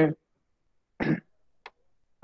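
A man briefly clears his throat once, about a second in, with a faint click just after; the rest is near silence between spoken words.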